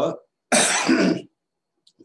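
A person clearing their throat once: a short, loud, rough burst lasting under a second.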